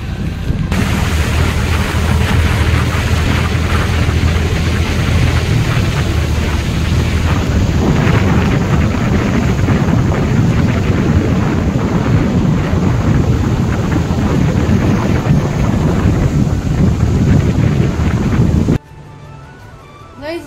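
Loud, steady wind rumble on the microphone of a moving motorbike, mixed with engine and road noise. It cuts off suddenly near the end.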